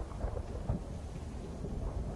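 Low rumble of thunder with rain, part of a film soundtrack played over room speakers.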